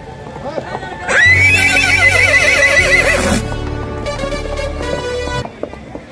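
A horse whinnies loudly about a second in, one long wavering call lasting about two seconds, over music. Music and the clip-clop of hooves carry on after it and cut off suddenly near the end.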